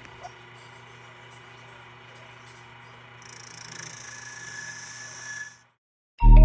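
Wood lathe running with a steady motor hum. About three seconds in, a hand-held turning tool starts cutting the spinning cherry blank, adding a hiss over the hum, until the sound cuts off suddenly just before the end.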